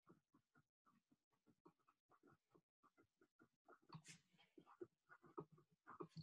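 Near silence, with faint scratches of a felt-tip marker writing on paper in short strokes that grow a little louder toward the end.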